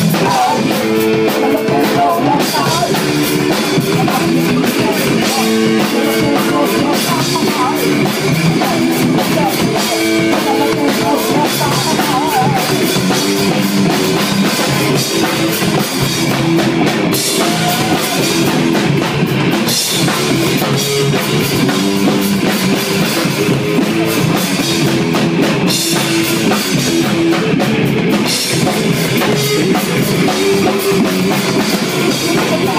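Live rock band playing loud and without a break: electric guitar riffing over a drum kit with steady cymbal hits.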